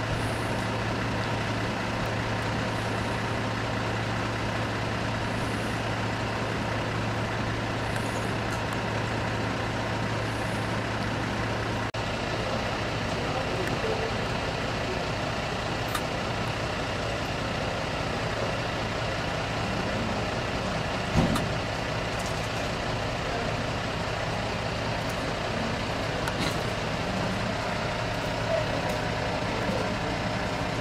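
Steady vehicle engine noise with a constant low hum, and faint voices now and then. The background changes abruptly about twelve seconds in, and a single short knock sounds about twenty-one seconds in.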